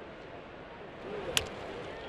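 A wooden baseball bat striking a pitched ball once, a single sharp crack about a second and a half in, over the steady murmur of a ballpark crowd. The contact pops the ball up.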